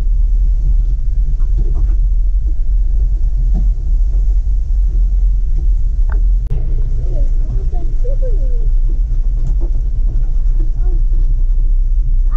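Inside the cabin of a Mahindra off-roader driving over a rough dirt track: a loud, steady low rumble from the engine and the bumpy ground, with a few sharp knocks as the vehicle jolts.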